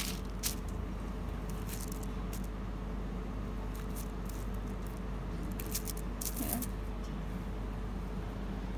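A knife trimming soft potato dough on a wooden cutting board: a few scattered faint clicks and taps over a steady low hum.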